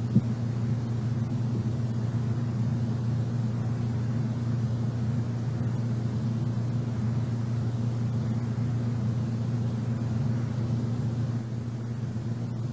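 Steady low hum with a faint hiss over it: the background noise of an old lecture recording, with a small click just after the start and a slight drop in level near the end.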